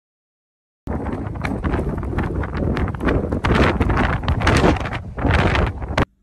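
Strong blizzard wind gusting across the microphone: a loud rushing noise that swells and dips with the gusts, starting suddenly about a second in.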